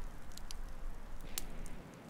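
Small campfire crackling, with a few sharp pops over a low steady rumble; the sound drops off near the end.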